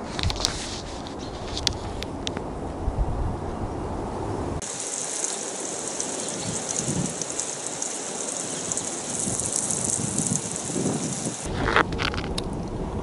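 Water spraying steadily onto the gravelly soil of a freshly repotted bonsai pot to soak it, a high hiss that starts abruptly about a third of the way in and cuts off shortly before the end. Before it come a few knocks and handling noise over a low rumble.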